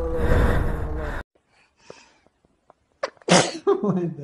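Alpaca sneezing: one short, loud, sharp burst about three seconds in, followed by a brief voice-like sound that falls in pitch. Before it, for about the first second, a steady road rumble with an engine hum cuts off abruptly.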